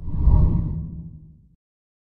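A deep whoosh sound effect for an animated logo sting. It swells in quickly and fades out over about a second and a half.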